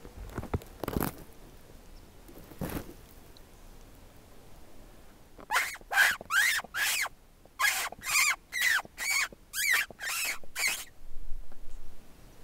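A hunter's mouth squeak imitating a distressed rodent to call a coyote: a run of about a dozen short, sharp squeaks, roughly two a second, starting about five seconds in and lasting about five seconds. Two soft rustles come before it.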